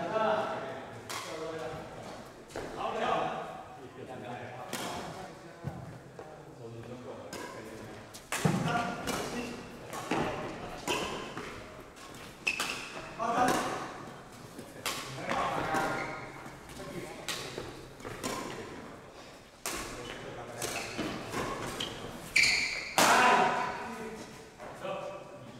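Badminton rally: sharp cracks of rackets striking a shuttlecock at irregular intervals, with thuds of footwork on the court and players' voices between shots.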